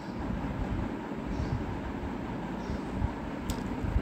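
A spatula stirring thick, simmering daal in a steel kadhai: an uneven low sloshing and scraping, with one sharp click about three and a half seconds in.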